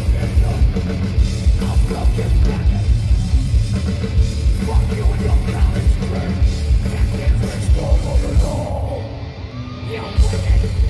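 Heavy metal band playing live: distorted guitars and bass over fast, driving drums. Near the end the band drops away briefly, leaving a thinner, quieter sound, before crashing back in.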